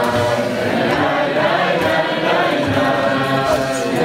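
A large group of teenagers singing a song together, many voices in chorus, with a steady level throughout.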